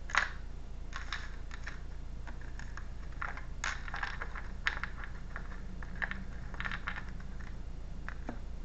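Tarot cards being shuffled and handled by hand: irregular soft snaps and flicks of card stock, the sharpest just after the start and clusters in the middle and near the end, over a steady low hum.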